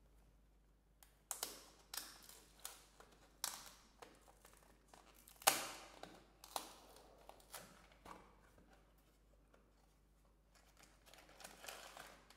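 Thin cardboard carton being handled and opened: a scattering of sharp clicks and short rustles as the flap is pried up and the box pulled open. Near the end there is soft crinkling as a foil sachet is drawn out of the foil liner.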